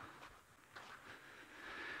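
Faint footsteps on a sandy dirt path in quiet outdoor surroundings, then a drawn-in breath swelling near the end.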